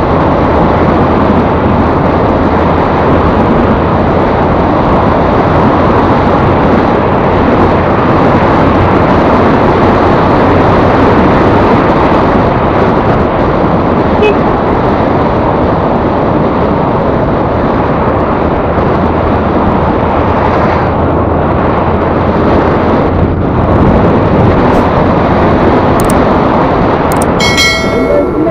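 Yamaha Ray ZR scooter on the move: a steady rush of wind and road noise with a low engine hum underneath. A brief high ringing sound comes near the end.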